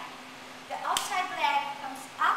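A woman's voice speaking briefly, with a single sharp click about a second in.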